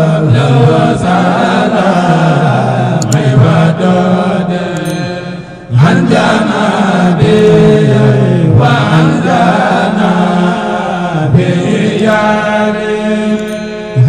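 A man chanting a devotional Arabic-language song, his voice held in long, gliding melodic lines, with a short break about five and a half seconds in and another near the end.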